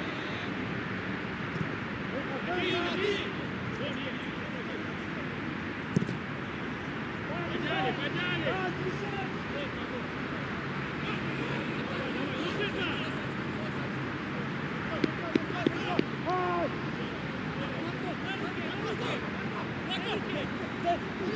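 Pitch ambience of a football match: players shouting and calling to each other over a steady background hiss. A sharp knock comes about six seconds in, and a few quick knocks follow later.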